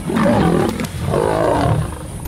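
Lions and a leopard growling as the pride attacks the leopard: two long rough growls, the second starting about a second in.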